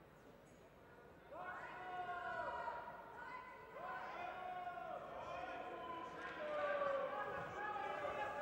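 People shouting during a judo bout: three long, drawn-out calls about two and a half seconds apart, each rising in pitch and then held, the first about a second in.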